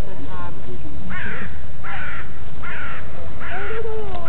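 A bird calling: four harsh calls, a little under a second apart, starting about a second in, over a steady low rumble.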